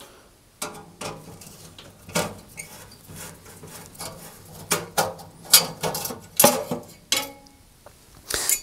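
Screwdriver undoing the screws of a cooker's sheet-metal grill bracket and the bracket being worked out of the grill compartment: light scratching at first, then a string of sharp metallic clicks and clinks, louder in the second half.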